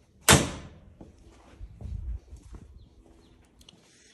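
A single sharp bang about a third of a second in, typical of the side-by-side's door being shut, ringing briefly; a few faint low thumps follow about two seconds in.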